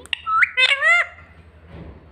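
Indian ringneck parakeet giving a quick run of three or four high, shrill calls in the first second, the last ones arching up and down in pitch.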